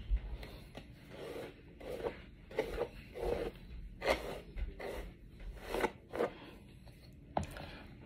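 Wig hair rustling and brushing close to the microphone as hands run through and adjust a lace front wig, in a string of irregular scratchy rustles. A sharp click comes near the end.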